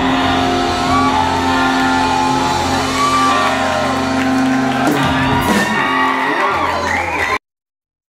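Live rock band holding a final chord on electric guitars, bass and keyboards while the crowd whoops and shouts. The sound cuts off abruptly about seven seconds in.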